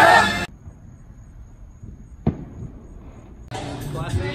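A group of people singing together, cut off abruptly about half a second in. Then faint background noise with a single sharp click a little past two seconds, before voices and music come back near the end.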